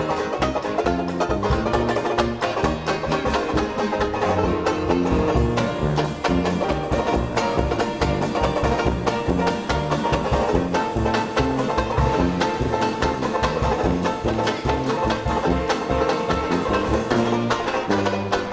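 Banjo strumming fast chords in a traditional jazz band, backed by a walking tuba bass line and drums.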